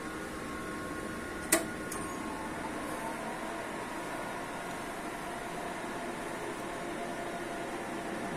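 Steady hum of running laboratory equipment, its cooling fans and chiller, with faint steady whining tones. One sharp click comes about one and a half seconds in.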